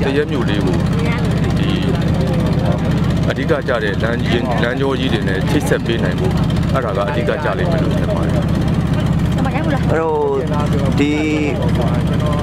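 Engine of a wooden river boat running steadily, a low even drone, under a man's voice talking.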